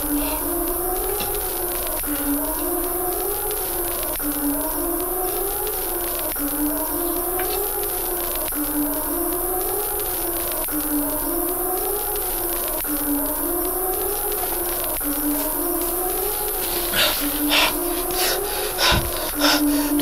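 A slow, siren-like wailing tone that holds low and then swells up and back down, repeating about every two seconds, with a few sharp knocks near the end.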